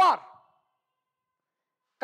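A man's voice drawing out the end of the word "power" with falling pitch, lasting about half a second, then near silence.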